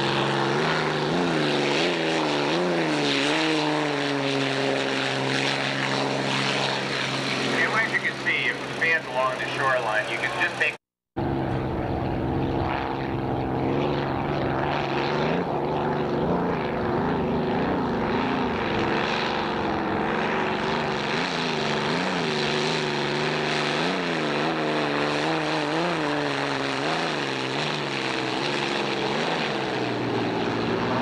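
Unlimited racing hydroplanes with piston aircraft engines running at speed, a loud steady drone that rises and falls slightly as the boats pass. The sound cuts out briefly about eleven seconds in, between two shots.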